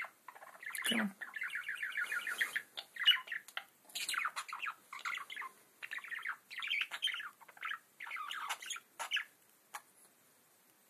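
Male budgerigar warbling and chattering in quick runs of notes, with short pauses between bursts. The chatter stops shortly before the end.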